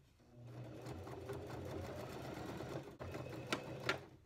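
Elna domestic sewing machine stitching through denim jeans, building up over the first second and running steadily, with a brief break about three seconds in before it runs on. Two sharp clicks come near the end as it stops.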